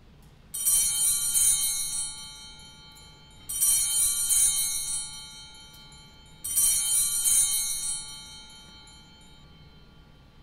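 Sanctus bells rung three times, about three seconds apart, each ring fading over a second or so: the bells marking the elevation of the chalice at the consecration.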